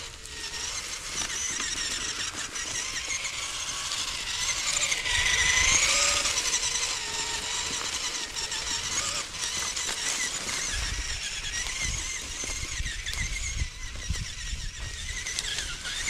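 Axial Capra UTB18 RC crawler's brushed motor and gearing whining as it drives, the pitch wavering up and down with the throttle and going highest about five to six seconds in. A low rumble joins from about eleven seconds.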